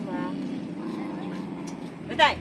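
Steady low hum of road traffic, with a brief distant voice near the start.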